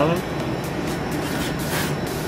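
One spoken word, then steady background hum and hiss with background music running under it.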